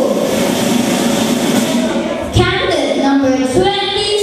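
Music with a singing voice over crowd noise; the singing voice stands out clearly in the second half.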